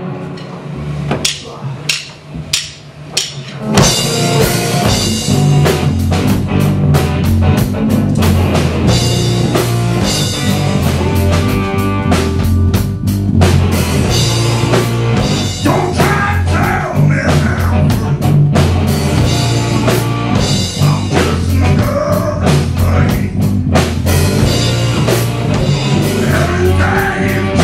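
A live rock band starting a song: a few sharp taps, then about four seconds in the full band comes in loud, with drum kit, bass and electric guitar playing a steady driving beat.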